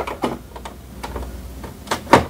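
USB thumb drive being pushed into the front USB port of an HP OfficeJet Pro printer: a few light scraping ticks, then a sharp click near the end as the plug seats.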